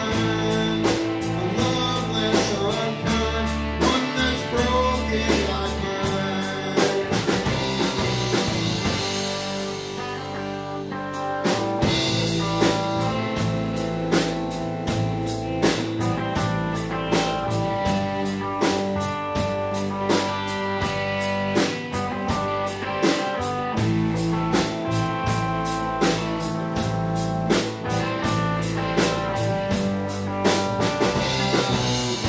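Live rock band playing: electric guitars, electric bass and a drum kit keeping a steady beat. The drums and cymbals thin out for a few seconds about a third of the way through, then come back in full.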